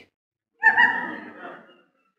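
A man's breathy, wordless vocal sound, starting suddenly about half a second in and trailing off over about a second.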